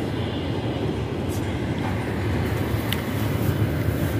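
Steady low rumble of distant city traffic.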